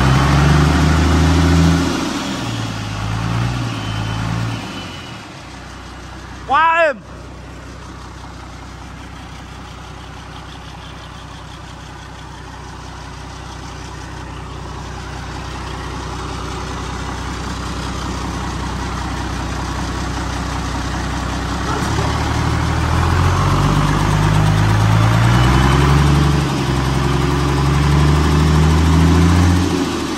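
Isuzu 6WF1 inline-six diesel running on a test stand: it is revved at the start, drops back to a quieter steady run that slowly builds, and is revved up again for the last several seconds. A brief loud squeal cuts in about seven seconds in.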